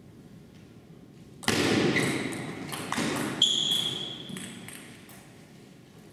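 Table tennis point in a hall: sharp knocks of the ball on bat and table, then a loud burst of noise lasting about three seconds with a short high squeak in the middle, ringing in the hall.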